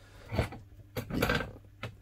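Handling noises around the fixture on the bench: a short rub, a longer rustle and a sharp click, over a steady low hum.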